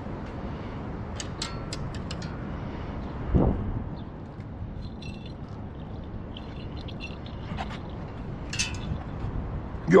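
Light clicks and one dull thump about three and a half seconds in, over a steady outdoor background. They come from a spinning rod and reel being handled against a metal railing as a baited rig is dropped into the water.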